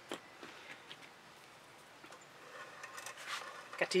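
Quiet for the first two seconds or so, then faint soft rubbing and scraping that grows over the next second and a half as the painted canvas is handled and turned on its board, before a woman starts to speak.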